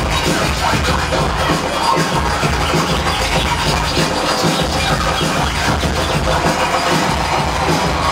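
A turntablist scratching a vinyl record on a turntable, working the mixer with the other hand, over a loud, continuous hip hop beat played live.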